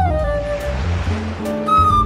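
Instrumental 1940s-style swing jazz: a melody of held notes over a bass line, with a brief swell of hiss rising and fading in the first second or so.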